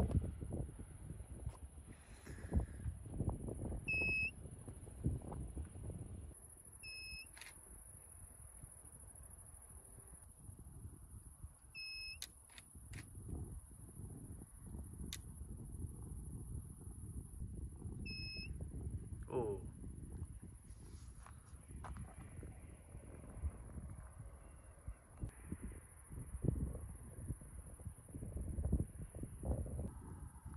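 Gusty wind rumbling on the microphone as a thunderstorm approaches, over a steady high-pitched chorus of crickets. A short electronic beep sounds four times in the first twenty seconds.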